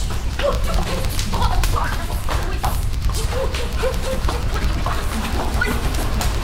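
Close-range sparring: quick sharp slaps and knocks of blows and blocks, with short high yelps scattered among them over a steady low rumble.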